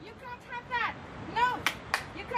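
A series of short, arched chirps in quick groups, like a bird calling, with two sharp clicks near the end.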